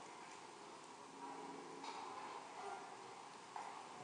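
Faint room tone: a low steady hiss, with a few slight, indistinct sounds in the middle.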